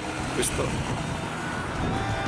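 Low, steady outdoor street rumble, with a short snatch of voice about half a second in.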